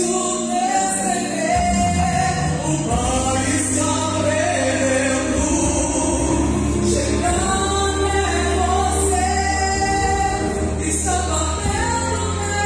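A woman sings a Portuguese-language gospel song into a handheld microphone over instrumental accompaniment, with a bass line coming in about a second and a half in.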